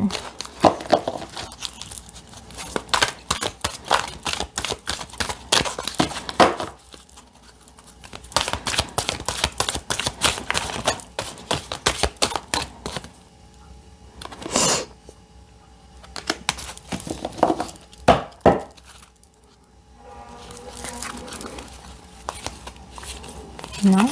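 A deck of oracle cards shuffled by hand: runs of rapid card slaps and flutters, broken by short pauses.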